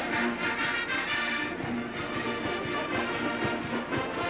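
A marching band playing in the stadium, brass with sousaphones, with short low notes repeated in a steady rhythm.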